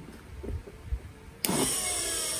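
Large brushed DC motor switching on suddenly about one and a half seconds in and then running steadily under power from its speed controller.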